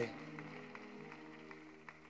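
Soft background music: a quiet chord of several held notes, moving to a new chord about a second in.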